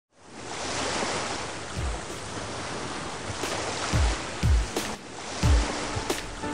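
Ocean surf washing steadily, fading in at the start. Four deep booms that drop in pitch sound over it: one about two seconds in, two close together around four seconds, and one near the end.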